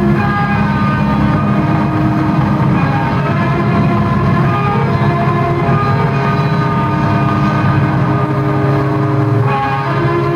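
A live blues-rock trio of electric guitar, bass guitar and drums playing loudly, with long held notes ringing over the rhythm and a change in the notes near the end.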